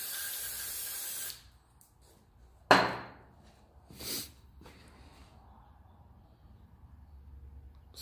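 Aerosol can spraying into a brake wheel cylinder, a steady hiss that cuts off about a second in. A sharp knock follows near three seconds in and a softer clunk about a second after it.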